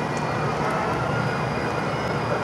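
Engines of slow-moving shuttle buses running steadily at walking pace, over a constant outdoor street hum.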